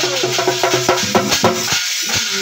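Folk percussion music: large brass hand cymbals clashing rapidly with a drum, over a steady low tone. The playing stops abruptly just before the end.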